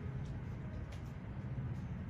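Steady low background rumble, with a few faint ticks.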